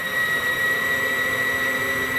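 The electric landing-gear retract on a model jet running as it lowers the nose gear: a steady high-pitched whine.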